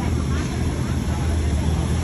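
Steady low rumble of city street traffic, with faint voices of passers-by.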